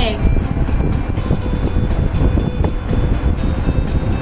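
Steady low rumbling noise, like wind or traffic, coming through a participant's open microphone on a video call, with no voice in it.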